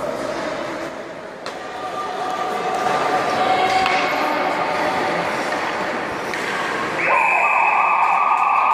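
Ice hockey game in an indoor arena: voices from the rink and stands, with a single sharp knock of puck or stick about one and a half seconds in. A loud, steady tone starts abruptly near the end.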